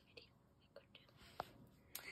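Near silence: room tone, with a few faint ticks and a faint, whispered 'oh' about a second and a half in.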